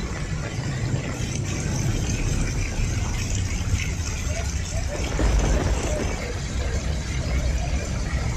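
Motorbike engines running through a flooded street, over a steady wash of rain and running water, with a deeper engine rumble swelling about five seconds in.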